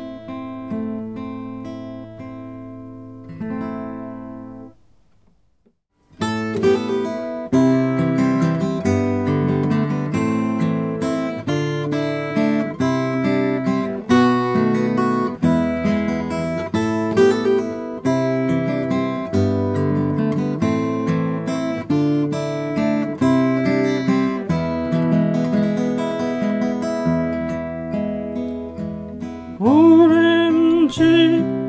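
Acoustic guitar strumming chords. A chord rings and fades over the first few seconds, followed by a brief near-silent gap about five seconds in. The guitar then starts strumming again in a steady rhythm. The later part is the recorder's signal passed through a Sony α6600 camera's audio input.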